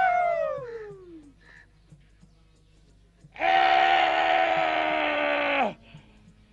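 A chorus of performers' voices wailing together in a falling glide that dies away about a second in. After a short pause comes a loud, held group note for about two seconds that ends with a quick drop in pitch.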